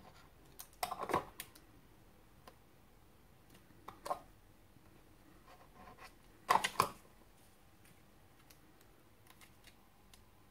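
Small clicks and taps from handling a plastic glue bottle and paper pieces on a cutting mat, with fingernails on plastic and card. They come in three short clusters, about a second in, about four seconds in and the loudest at about six and a half seconds, with a few faint ticks near the end.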